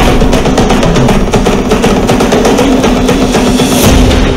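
Loud orchestral-style trailer music: a fast, driving drum rhythm over held low notes.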